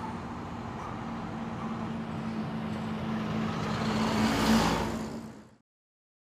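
Street traffic: a motor vehicle's engine hum and tyre noise building as it passes close, loudest about four and a half seconds in, then fading out to silence near the end.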